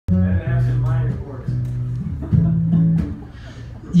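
Acoustic guitar: a few chords plucked loosely and left to ring, about five strokes spaced half a second to a second apart, dying away near the end.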